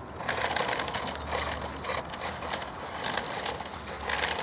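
Remote-control toy car driving over rough concrete, its small electric motor running and its wheels grinding along, starting a moment in.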